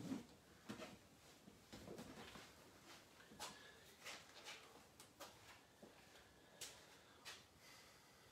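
Near silence, with faint scattered taps and shuffles of a person getting up off a floor mat and walking on a concrete floor.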